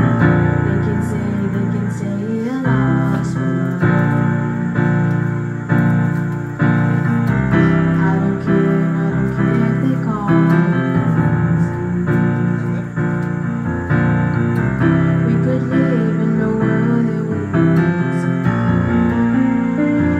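Casio electronic keyboard playing sustained chords that change every second or two, with a girl singing a melody over it into a microphone.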